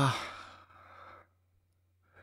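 A person's drawn-out "iyaa" trailing off into a breathy sigh that fades away about a second in, then quiet.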